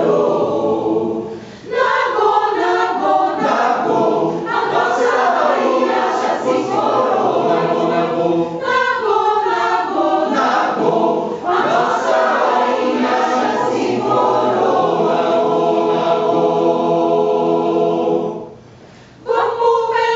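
Mixed choir of men's and women's voices singing a maracatu song a cappella, in sustained chords. The singing drops out briefly about a second and a half in and again near the end.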